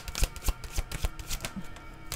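A deck of tarot cards being shuffled by hand: an irregular run of sharp card clicks and riffles.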